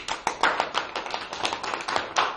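A few people clapping by hand, a dense, uneven patter of claps that starts abruptly.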